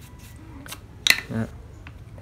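Light clicks of a hand tool and metal parts being handled, the loudest a single sharp metallic click about a second in, as a screwdriver is set down beside the opened-up angle grinder and its spindle is taken in hand.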